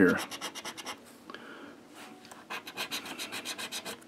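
A lottery scratcher ticket being scratched off, its coating rubbed away in quick, even strokes. There are two runs of strokes: one in the first second, then a pause, then a longer run from about two and a half seconds in.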